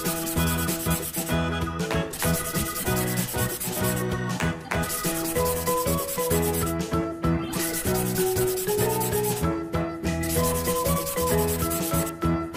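Felt-tip permanent marker scratching across paper in repeated strokes of about two seconds each, over upbeat background music with a steady bass line.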